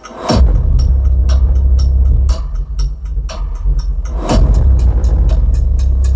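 Trailer-style sound-design music played loud over Bluetooth through a 2.1 amplifier and its speakers, dominated by heavy sub-bass. A deep downward-sweeping boom comes just after the start and again about four seconds in, over a continuous low bass and evenly spaced percussive hits.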